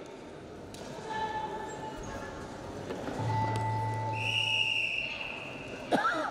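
Sports hall ambience at a wrestling mat: a background murmur of distant voices, with several short steady tones of about a second each. A higher one near the end, and a low hum.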